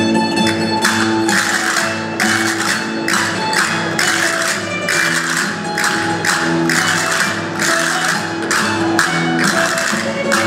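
A rondalla of plucked strings (bandurrias, lutes and guitars) playing a lively Aragonese jota, with a rhythmic rattling of hand percussion on the beat.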